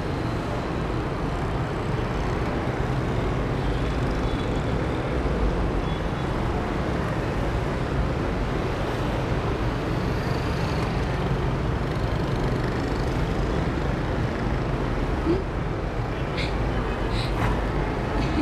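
Steady city street traffic: motorbikes and cars passing, with a few short high-pitched sounds near the end.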